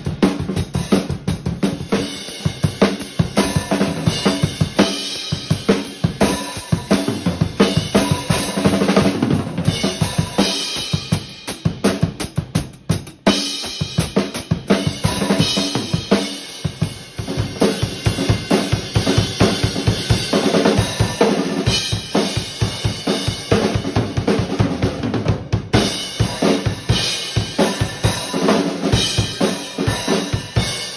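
Acoustic Gretsch drum kit with Zildjian cymbals played with sticks: a continuous rock groove of bass drum, snare and cymbals, with a brief drop in level about twelve seconds in.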